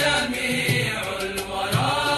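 Intro music of chanted religious singing in long held notes, with a soft low beat about once a second.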